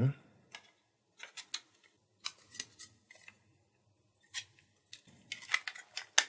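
Hard plastic parts of a Nerf Barricade blaster being handled and fitted together: scattered small clicks and taps, one or two at a time, with gaps between.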